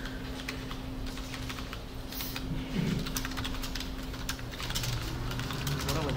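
Typing on a computer keyboard: a run of key clicks, sparse at first and coming thick and fast from about halfway in.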